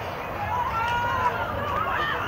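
Women footballers shouting and calling to each other on the pitch, with a few drawn-out high calls that rise and fall, over a steady low hum.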